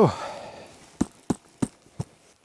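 A man's "whew" exhale, falling in pitch, followed by four short, sharp clicks about a third of a second apart.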